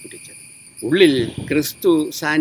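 A man speaking from about a second in, over a steady high-pitched insect drone that runs on unchanged underneath.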